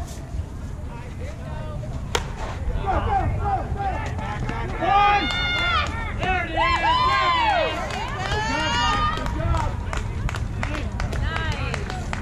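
A single sharp crack of a softball bat hitting the ball about two seconds in, followed by several players shouting and calling out over the next several seconds.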